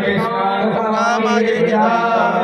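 Devotional kirtan chanting by male voices, a chanted refrain held continuously without pause.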